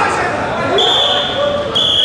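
Voices calling out around a wrestling mat, with two long, steady high whistle tones, the first about a second in and the second starting near the end.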